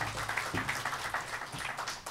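Audience applauding, the clapping fading away near the end.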